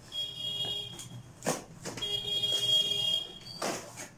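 Packing tape being pulled off a cardboard parcel, giving two high, steady screeches, about a second and a second and a half long, with short rasps of tape and cardboard between and after them.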